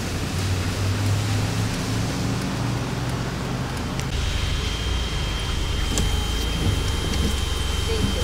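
Steady road-traffic noise. About four seconds in it changes to a car idling with a window open, with a thin steady high tone over the engine.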